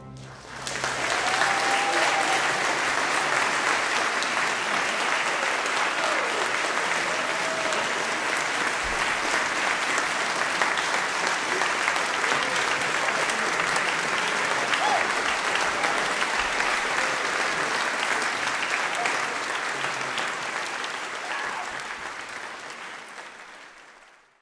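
Audience applauding after the final chord of a choral and orchestral performance. The applause starts about half a second in, holds steady, then fades out over the last few seconds.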